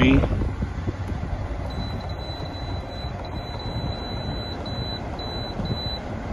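Toshiba 6000 BTU portable air conditioner running with a steady fan noise, while its control panel sounds a high electronic beep as the temperature setting is stepped down from 73 to 62. The beep starts as two long tones and near the end turns into short beeps about half a second apart.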